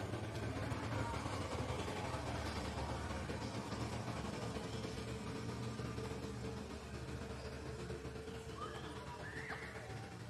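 Outdoor ambience: a steady low rumble with a faint hiss, easing slightly in the second half, and a few short rising high-pitched calls near the end.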